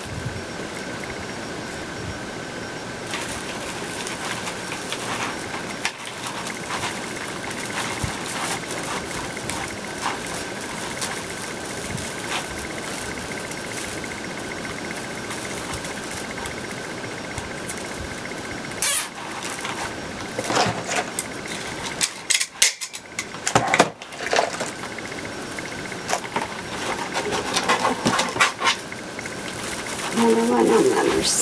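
Plastic deco mesh rustling and crinkling as it is pushed and twisted into a wreath frame by hand, in short bursts that get busier in the last third. Under it is a steady background hiss with a faint high whine that stops about two-thirds of the way in.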